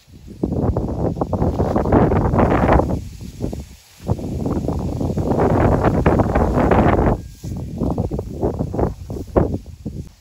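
Dry grass and dirt crackling and scraping as a Komodo dragon thrashes and drags a goat carcass, in two long bouts of about three seconds each, then shorter bursts near the end.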